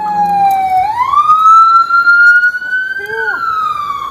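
Emergency vehicle siren wailing: its pitch slides slowly down, sweeps up about a second in, holds high, then falls again near the end.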